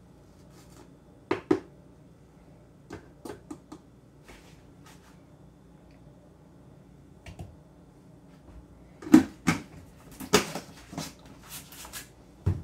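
Kitchen handling sounds: scattered clicks and knocks of containers and utensils being set down and moved on a kitchen counter, a few at a time, growing busier near the end.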